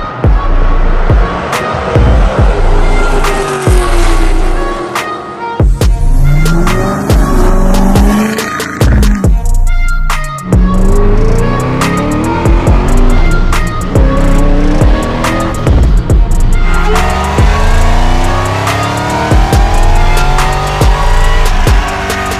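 Music with a heavy beat over clips of performance car engines revving and accelerating, their pitch rising and falling several times.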